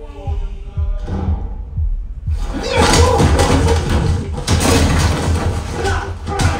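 A film soundtrack playing loud through a 7.2.4 Atmos home theater with SVS subwoofers, recorded in the room. A short pitched chime sounds in the first second. From about two seconds in comes a dense action-scene mix of music, impacts and heavy bass.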